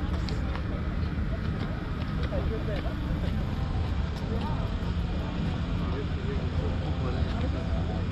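Outdoor ambience: a steady low rumble with indistinct voices of people nearby.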